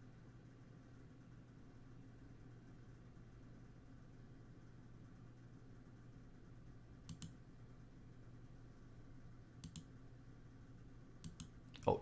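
Quiet room tone with a faint low steady hum, broken by a few short clicks in quick pairs about seven, nine and a half and eleven seconds in: a computer mouse being clicked.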